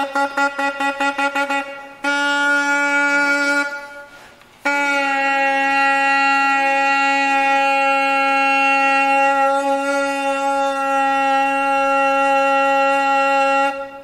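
Solo bassoon: a run of quick repeated tongued notes, then a held note that fades away, and after a short break one long steady note held for about nine seconds that stops abruptly near the end.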